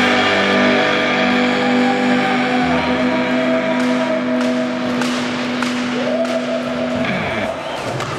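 Rock soundtrack ending: an electric guitar chord held and ringing out, then bending, gliding tones near the end. Scattered sharp clicks are heard from about halfway.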